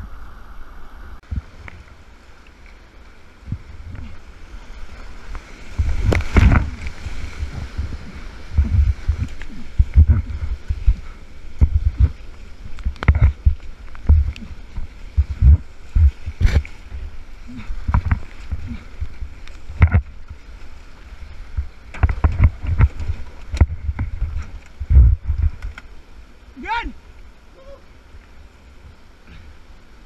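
Whitewater rapids rushing, with irregular loud splashes and thuds of paddle strokes and water breaking over the kayak, coming every second or so from about six seconds in. A brief voice cry near the end.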